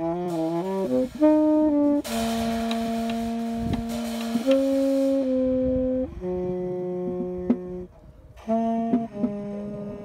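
Tenor saxophone improvising jazz: a quick run of short notes, then long held notes, with a brief break about eight seconds in. A drum kit played with soft mallets, with cymbal wash and a few strikes, accompanies it.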